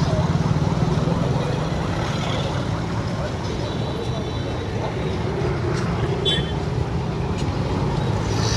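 Steady street noise of motor traffic, scooters and motorbikes, mixed with indistinct voices of people nearby.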